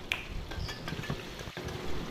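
Chopped onions frying in oil in a pan: a faint, steady sizzle with a few small ticks.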